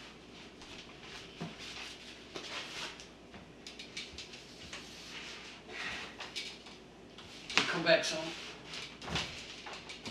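Styrofoam packing foam rubbing and scraping as a large RC boat hull is lifted and set down onto a foam stand, with a few light knocks of handling.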